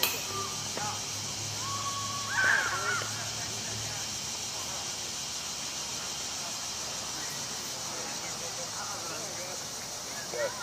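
Open-air ambience of a softball field: a sharp knock right at the start, a loud call about two and a half seconds in, then faint distant voices over a steady high hiss.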